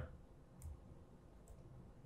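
Near silence with two faint clicks, about half a second and a second and a half in. The clicks fit a pen tapping the touchscreen of a Surface Book 3 laptop to pick an annotation colour.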